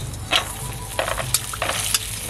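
Hot oil sizzling in an iron kadai, with four or five sharp scrapes of a metal spatula as the fried pieces are scraped out into a steel bowl once they have fried to a reddish brown.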